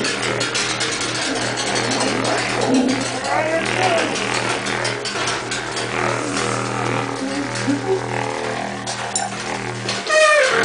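Improvised drone of blown horns: a steady low tone held throughout, with breathy noise and short sliding tones layered over it, one of them blown through a white cone-shaped horn.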